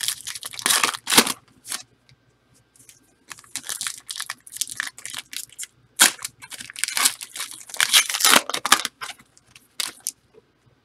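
A trading card pack's wrapper being torn open and crinkled by hand, in two bouts of crinkling and tearing with a short pause between them, two to three seconds in.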